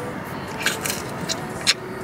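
Close-up eating sounds: a mouthful of açaí bowl taken off a plastic spoon and chewed, with about four short, wet clicks from the mouth.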